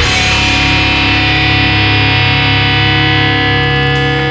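Thrashcore recording: the full band's playing stops right at the start, leaving a distorted electric guitar chord held and ringing over a sustained low note.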